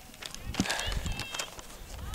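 Faint field hockey play: distant high-pitched shouts from players on the field, with a few short sharp knocks, such as sticks striking the ball.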